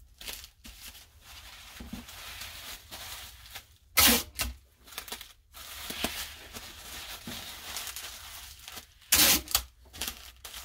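Bubble wrap crinkling as it is wrapped and handled, with two loud, short rips of packing tape pulled off a tabletop tape dispenser, one about four seconds in and one near the end.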